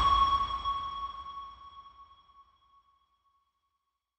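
A single bell-like chime with a low boom under it, struck once and ringing out, fading away over about two and a half seconds: the closing note of the podcast's outro music.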